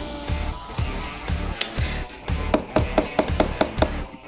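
Background music with a steady beat over a sander working on the edge of a laminated wooden buck. A quick run of taps comes in the last second and a half.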